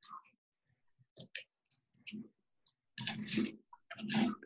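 Cardboard pieces being handled and fitted by hand: a string of light clicks and rustles, a little fuller about three seconds in.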